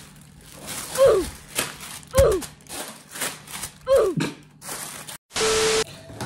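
Cardboard box and packaging being opened, with rustling and tearing throughout and three short vocal sounds falling in pitch, about one, two and four seconds in. Near the end the sound cuts out suddenly, then a brief steady hiss with a held tone follows.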